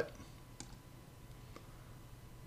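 Two faint computer mouse clicks, about a second apart, over quiet room tone.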